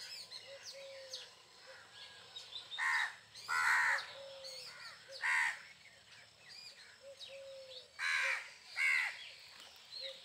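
House crows cawing: five loud caws, a pair about three seconds in, a single one a moment later, and another pair near the end, over faint chirping of small birds.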